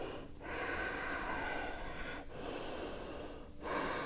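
A woman breathing audibly and slowly while holding downward-facing dog: two long breaths, with a third starting near the end.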